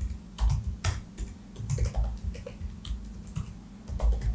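Typing on a computer keyboard: irregular keystrokes, a few a second, in uneven runs.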